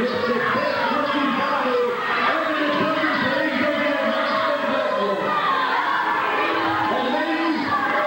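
A man talking into a handheld microphone over a hall's PA, his amplified voice echoing in the room, with crowd noise from the audience over it.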